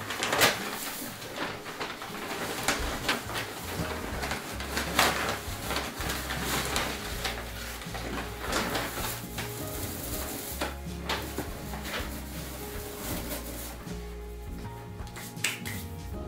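Dry timothy hay and its bag rustling and crackling as handfuls are pulled out and pushed into hay boxes. The crackling is irregular and dense, easing off a little near the end. Background music with steady low bass notes plays underneath.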